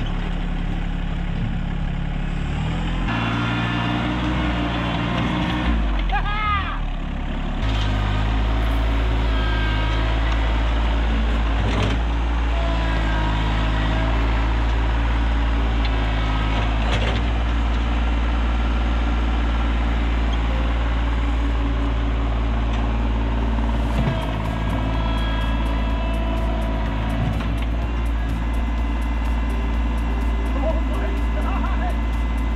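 Compact tractor's diesel engine running under load as it works the front loader, its note shifting a couple of times early on, with a few brief knocks.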